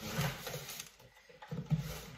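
Plastic packing straps being pulled off a cardboard box, scraping and rustling against the cardboard in two bursts, one at the start and one near the end.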